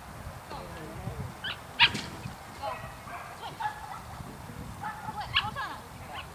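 A dog barking: a few short, sharp barks, the loudest about two seconds in and more around five seconds in.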